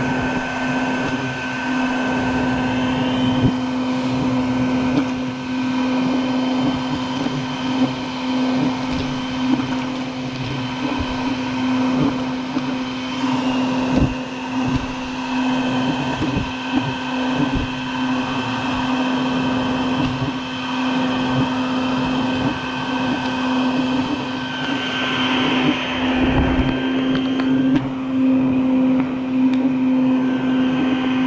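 Vacuum motor running steadily with a constant droning hum, pulling air through a corrugated hose set at a bald-faced hornet nest to suck up the hornets. Light ticks come through now and then over the hum.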